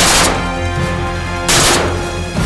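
Two shotgun shots about a second and a half apart, each with a short ringing tail, fired at wood pigeons in flight, over background music.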